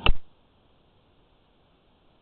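A single sharp click right at the start, then near silence with only a faint hiss.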